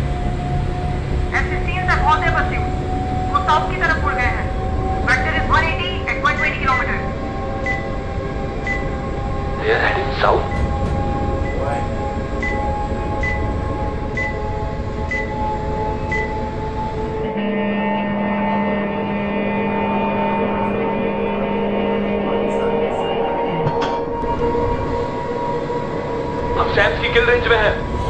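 Fighter-jet film soundtrack. A sustained tone slowly rises in pitch throughout, with voices in the first few seconds and again near the end. Midway a cockpit radar beeps regularly, a little more than once a second, for about eight seconds, then a steady low tone sounds for about five seconds.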